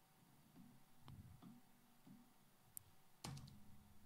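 Near silence with a few faint computer mouse clicks.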